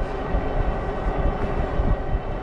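Mokwheel Scoria fat-tire electric bike under way on pavement: a steady rush of wind and tyre noise with a low rumble, and a faint steady whine from the electric motor pulling under power.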